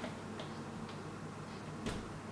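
A few light clicks and taps from a closed sliding glass door as its handle is tugged and hands are pressed against the glass, over a low steady hum; the sharpest click comes near the end.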